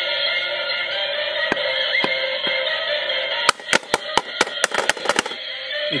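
A Lalaloopsy toy alarm clock radio playing a music station through its small speaker, thin and tinny. From just past halfway, a rapid string of about a dozen sharp cracks, with the radio sound cutting in and out between them.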